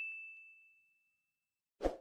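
Notification-bell ding from a subscribe-button sound effect, one clear tone ringing out and fading over about a second and a half. A short click follows near the end.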